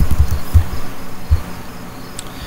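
A few dull clicks and thumps of a computer keyboard and mouse: the last keystrokes and a click to run a search. The clearest come about half a second in and just past a second in.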